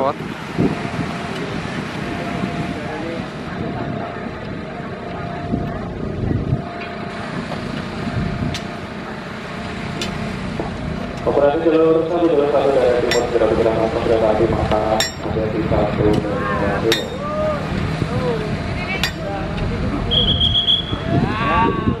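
Construction-site ambience at a railway station: workers talking among themselves, sharp metallic clinks of tools every second or two over a steady hum, and a brief high whistle near the end.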